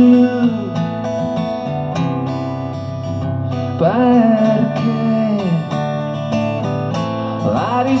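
Jumbo-bodied acoustic guitar strummed live in a steady accompaniment of chords, with the singer's voice coming in with a long note that slides in pitch around the middle and again near the end.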